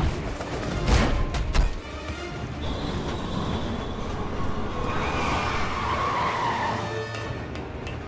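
A movie soundtrack mix: a few sharp hits in the first second and a half, then the rumble of a commuter train rushing past, with high whining tones over it and film score music underneath.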